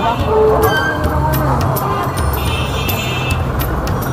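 Busy street noise: a vehicle engine runs low and steady under people's voices, and a horn sounds for about a second near the middle.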